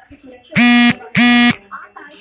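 Two short, loud electronic buzzer tones, each a steady low-pitched buzz about a third of a second long, sounding about half a second apart.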